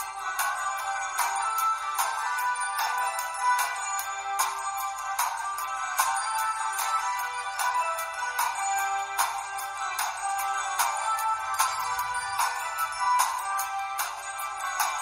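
Background music: a light, high-pitched melody over a steady beat, with little bass.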